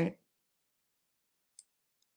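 The end of a spoken word, then a single short, faint computer mouse click near the end.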